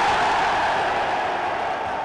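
A crowd cheering, fading out.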